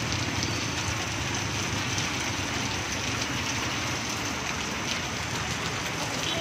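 Heavy rain falling steadily: a dense, even hiss with scattered sharp ticks.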